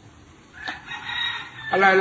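A rooster crowing faintly in the background: one drawn-out call of about a second, with a soft click just before it. A man's voice comes back near the end.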